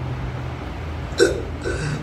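A man makes a brief throaty vocal sound into the microphone about a second in, then a weaker second one, over a steady low hum.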